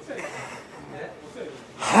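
A short lull with faint room noise, then near the end a sudden loud, sharp intake of breath from a man, leading straight into his spoken "hai".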